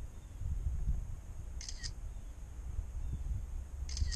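Two short phone-camera shutter clicks, one about halfway through and one at the end, over a steady low rumble of wind on the microphone.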